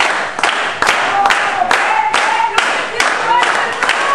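Group hand-clapping (flamenco palmas) in a steady rhythm, about two to three claps a second. A voice sings short phrases that bend in pitch over the claps.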